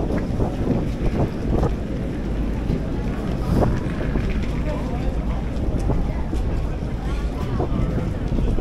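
Steady low rumble of a moored car ferry's engine running at the pier, mixed with wind buffeting the microphone.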